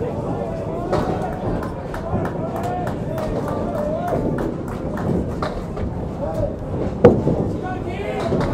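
Indistinct voices and chatter echoing around a candlepin bowling alley, with one sharp clack from the lanes about seven seconds in.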